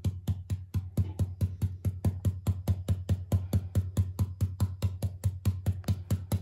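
A stencil brush pounced rapidly on a mylar stencil over fabric on a table: an even run of short dull taps, about six a second, with no break.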